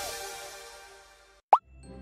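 Plucked guitar music dies away to near silence, then about one and a half seconds in comes a short cartoon pop sound effect whose pitch drops sharply, the loudest sound here. Soft music starts again just at the end.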